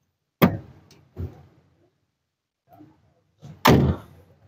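Three sharp knocks: a clear one about half a second in, a fainter one about a second in, and the loudest near the end.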